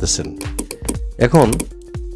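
A voice over background music, with a run of quick, sharp clicks typical of typing on a computer keyboard.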